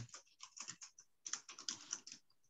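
Faint, irregular run of quick clicks from typing on a computer keyboard.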